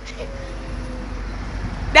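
Street traffic: a passing vehicle's low rumble that swells toward the end, with a faint steady tone in the first second.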